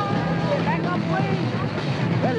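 Short cries and shouts from several voices, bending up and down in pitch, over a steady low drone on the film soundtrack.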